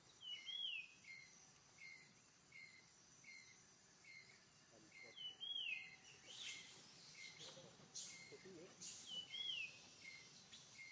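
Faint forest birdsong: one bird repeats a short call about every two-thirds of a second. A louder falling whistle comes three times, near the start, in the middle and near the end.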